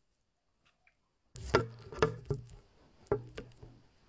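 Phone handling noise on its microphone: a run of sharp knocks and clicks, about five strong ones, over a low hum as the phone is held and adjusted.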